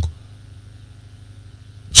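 Faint low hum of background noise in a gap between a man's spoken phrases; his voice trails off right at the start and comes back at the very end.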